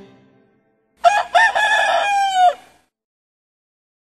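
A single rooster crow about a second in, rising, holding one long level note and dropping off at the end.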